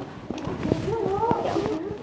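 A woman crying softly, her voice wavering up and down in short sobbing sounds, with a few light taps.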